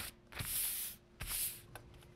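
Brown paper pattern rustling twice as it is unfolded and swept flat across the table by hand, two brief swishes about half a second each.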